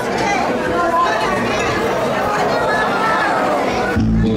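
Several people talking at once close by: loud, overlapping chatter of guests seated around a table, with the babble of a full hall behind it.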